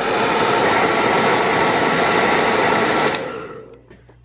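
Hair dryer blowing steadily, switched off about three seconds in and winding down.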